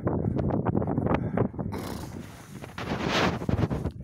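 Strong, gusty wind buffeting the microphone, rising and falling unevenly, with a louder gust about three seconds in.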